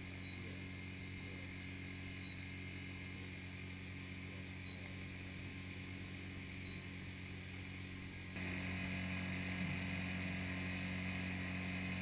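Steady low electrical-sounding hum over faint background noise. About eight seconds in it jumps to a louder, brighter steady hum with more hiss.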